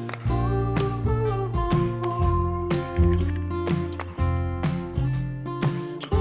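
Background music: strummed acoustic guitar over bass and a steady beat.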